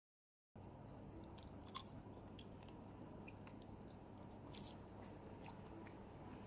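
Faint chewing of breaded fried carp, with a few small crisp clicks scattered over low steady room noise. The first half second is complete silence.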